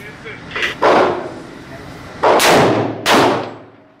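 Three handgun shots fired in an indoor shooting range, each ringing on with the echo of the range. The first comes about a second in, and the other two follow closer together near the end.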